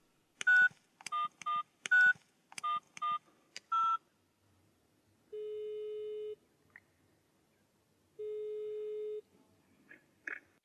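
A number keyed in on a touch-tone phone: seven quick dialing beeps, then the ringback tone of the call ringing through, two steady low beeps about a second long each.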